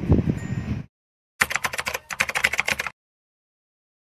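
Rapid keyboard-typing clicks for about a second and a half, starting near the middle, as a typing sound effect; before them, a brief stretch of outdoor wind and ambient noise that cuts off.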